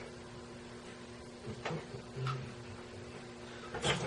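Quiet workshop room tone with a steady low electrical hum, broken by a few faint light clicks and knocks.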